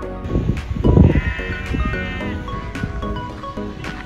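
A sheep bleating once, a single held call of more than a second starting about a second in, over background music. A brief low rumble comes just before the bleat and is the loudest moment.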